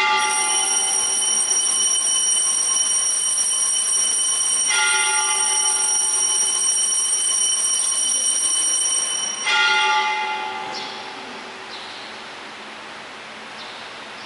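An altar bell struck three times about five seconds apart, each stroke ringing on with long high overtones that fade slowly after the last. It is rung at the elevation of the consecrated host during the Mass.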